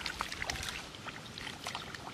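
Sloshing and splashing in shallow muddy water as a person wades and digs into the mud by hand, with irregular small splashes and drips.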